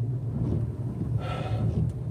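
Steady low hum of a Toyota SUV's engine idling, heard from inside the cabin, with the heater just switched on.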